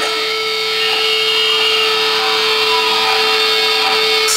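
Amplified electric guitar droning through the stage PA: a single steady held tone under a noisy distorted wash, with a higher whistling feedback tone sounding through the first half.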